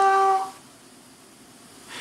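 A voice holding a long, flat-pitched "hello" that ends about half a second in, followed by faint hiss.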